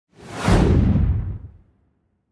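A single whoosh sound effect for a title reveal, with a deep rumble under it. It swells in just after the start, holds loud for about a second while its hiss sinks in pitch, and fades out about a second and a half in.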